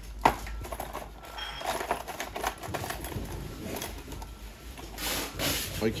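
Small hand-handling sounds at a workbench: a sharp click about a quarter second in, scattered light ticks, and a brief rustle near the end, as a metal bobbin and a screwdriver are handled.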